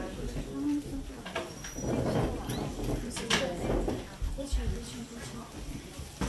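Indistinct voices talking quietly in a room in short patches, with a few faint clicks.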